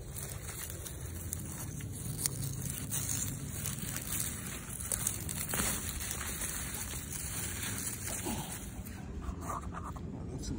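Winter radish leaves rustling and crinkling as hands push through the plants, a crisp, irregular crackle that sounds almost like plastic, over a steady low rumble.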